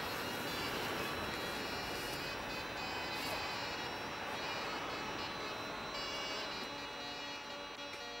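Steady city street traffic noise, an even hiss, with faint music of held tones underneath it.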